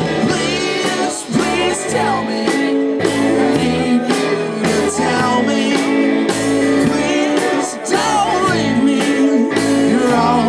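Indie rock band playing live: a man singing over guitar, with a steady beat.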